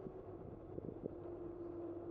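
Riding noise picked up by a bicycle-mounted camera: wind on the microphone and tyres rolling on asphalt. A steady whine sits on top, and there are a few light clicks about a second in.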